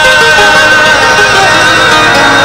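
Qawwali instrumental passage: a harmonium plays a melody over steady held drone notes, with no voice singing.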